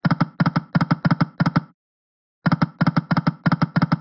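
Shining Crown slot game's reel-spin sound effect: a rapid run of short electronic ticks, about six a second, that stops for most of a second midway and then starts again.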